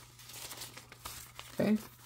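Paper dollar bills rustling and crinkling softly as they are handled and sorted in the hands, with a few small crisp snaps of the notes.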